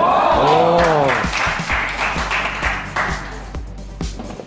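A drawn-out shout, its pitch rising then falling, as a table tennis point ends, followed by about two seconds of spectators clapping in a large hall.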